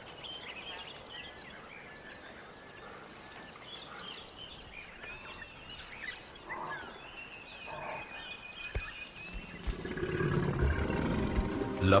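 Faint outdoor wildlife ambience with scattered chirping bird calls and one longer whistled note, then music swells in near the end.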